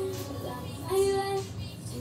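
Music with a singing voice, one note held for about half a second about a second in.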